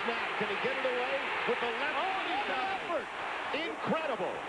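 A male television play-by-play announcer talking over the steady noise of a large stadium crowd during a punt return.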